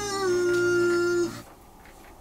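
A singer holding one long sung note that steps slightly down in pitch near the start and stops about one and a half seconds in.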